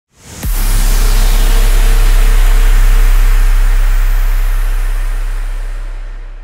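Cinematic logo-intro sound effect: a quick rising swell into a deep booming hit about half a second in, followed by a long low rumble and hiss that slowly die away.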